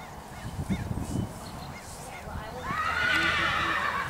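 A horse whinnies once: a drawn-out, high call that starts about two and a half seconds in and lasts over a second.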